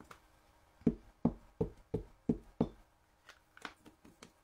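A Memento ink pad and a clear stamp on its acrylic block being tapped together to ink the stamp: six quick knocks, about three a second, followed by a few fainter taps.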